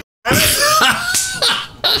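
Men laughing, with breathy, cough-like bursts, after a brief dead-silent gap at the very start.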